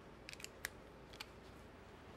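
A few short, light metallic clicks of socket tools being handled, as a universal joint is taken off a socket extension: two close together, then one more, then a last one a little after a second in.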